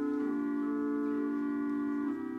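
Organ playing slow, sustained chords, moving to a new chord shortly after the start.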